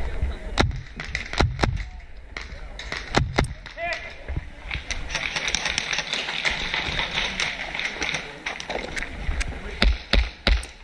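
Airsoft gunfire: a scattering of single sharp cracks of shots and BB strikes in the first few seconds, and again at the very end. In between come several seconds of steady rushing noise as the player moves.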